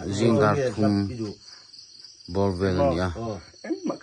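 A person speaking in two short stretches, with a steady high chorus of crickets chirping behind the voice and through the pause between.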